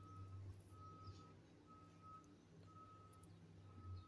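Near silence with a faint, single-pitched electronic beep repeating about once a second, typical of a vehicle's reversing alarm.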